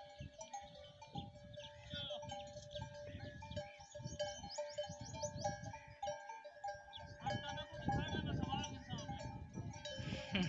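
Bells on a watering flock of sheep and goats clanking and ringing in short repeated strokes, with the animals bleating among them.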